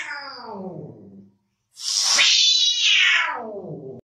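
A cat yowling: the tail of one long drawn-out call falling in pitch, then after a short break a second long call that rises and falls.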